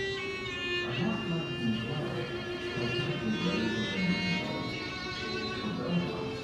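Violin-led string music with wavering held notes, over low indistinct voices.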